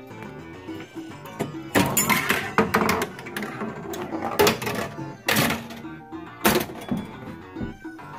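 Addams Family pinball machine in play: its game music runs steadily under several loud bursts of hits and sound effects, the loudest about two seconds in and again around four and a half, five and a half and six and a half seconds.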